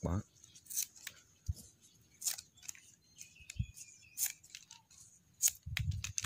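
Large scissors snipping through fresh coconut-leaf strips, several separate short cuts a second or so apart, trimming off the leftover ends of a woven leaf flower.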